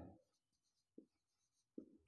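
Near silence with faint sounds of a marker writing on a whiteboard, two short faint scratches about a second in and near the end.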